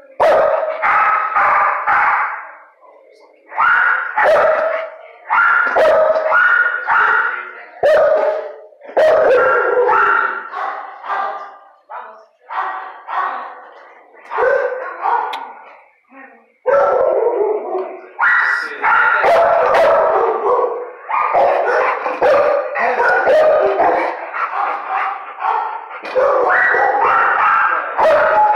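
Dog barking in repeated bursts, each about a second long, with short gaps; from about two-thirds of the way in the barking runs almost without a break.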